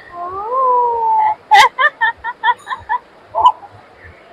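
A person's long drawn-out exclamation of surprise, followed by a run of laughter in short bursts, about six a second.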